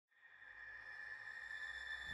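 A faint, steady, high ringing tone that fades in from silence: a sustained drone opening an eerie trailer score.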